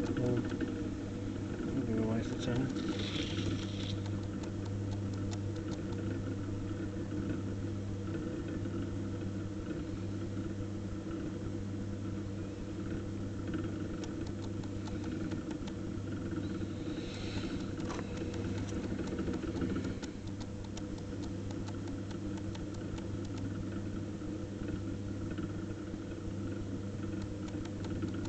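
Potter's wheel motor running with a steady low hum while the wheel spins. Faint wet sounds of hands working soft, sticky clay come through over it.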